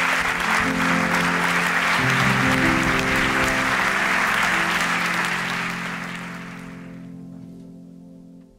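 A large audience applauding steadily, the applause fading away over the last couple of seconds, over background music with slow sustained notes.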